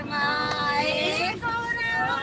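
A high voice singing a Hindi devotional bhajan to Shiva, holding long, slightly wavering notes.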